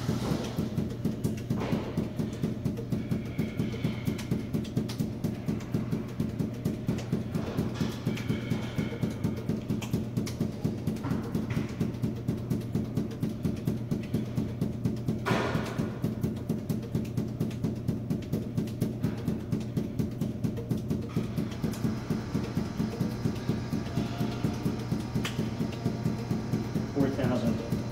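Five balls force-bounced hard off a hard, polished floor in a steady, even rhythm of about four bounces a second. A steady low hum runs underneath.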